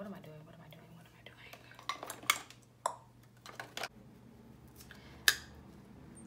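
A few sharp clicks and taps of makeup products and brushes being handled, the sharpest about five seconds in, over a faint low hum.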